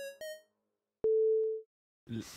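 End of a short electronic intro jingle: a few quick pitched notes stepping up and down, a pause, then one steady electronic beep about half a second long.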